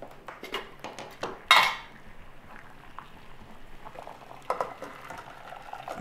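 Stainless steel cookware clinking and knocking on a gas stove as boiled chestnuts and their water are poured into a mesh strainer set over a pot. There is a brief loud burst of noise about a second and a half in.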